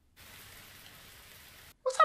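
A steady, even rushing hiss, rain-like, that starts a moment in and cuts off suddenly shortly before the end.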